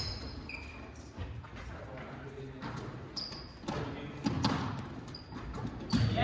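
Basketballs bouncing on a hardwood gym floor with short sneaker squeaks, echoing through a large gymnasium.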